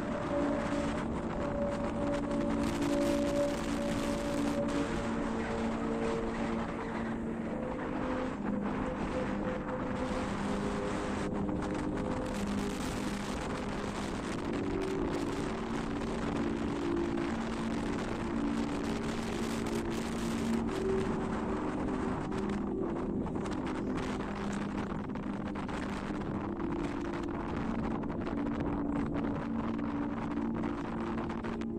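Strong gusting wind from a dust whirlwind buffeting the microphone in a steady rushing roar, with a slow melody of held notes sounding beneath it.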